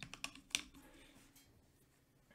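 Light clicks and taps from a paintbrush being picked up and handled at a watercolour palette, about five in quick succession in the first half-second, then quiet room tone.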